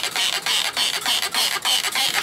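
Hand trigger spray bottle squirting degreaser onto an outboard powerhead in quick repeated pumps, about four a second.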